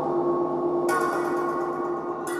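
Synthesizer drone of steady sustained tones, with a bright hiss joining about a second in.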